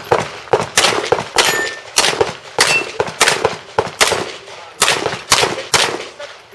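Semi-automatic pistol fired rapidly, about a dozen sharp shots in quick pairs and short strings at uneven spacing, each with a brief fading tail.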